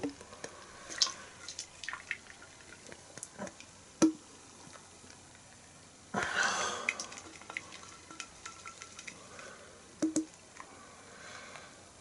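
Beer pouring from a can into a glass in a thin stream, fizzing as the foam head builds. A louder gush of pouring comes about six seconds in, and there are a couple of light knocks.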